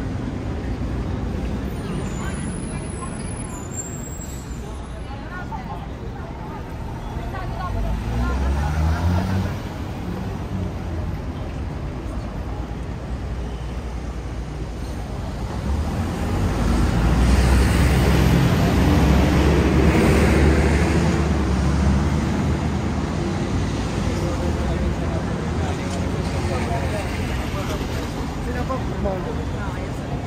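Street traffic with a motor vehicle passing close by about halfway through, its engine rumble swelling for several seconds and fading, over the voices of passersby.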